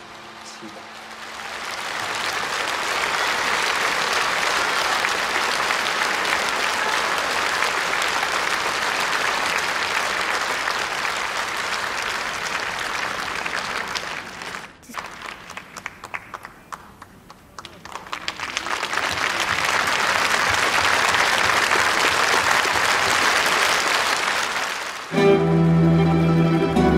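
Concert audience applauding. The applause swells over the first couple of seconds and holds steady, thins to scattered claps about fifteen seconds in, then builds again. Near the end, instrumental music with plucked strings begins.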